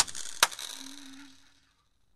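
A pause: one sharp tap about half a second in and a faint short hum that fades away, then dead silence from the middle on.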